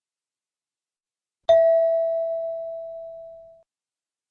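A single chime struck once about one and a half seconds in, a clear bell-like tone that rings out and fades away over about two seconds. It is the cue tone that separates questions in a recorded listening test, sounding just before the next question is read.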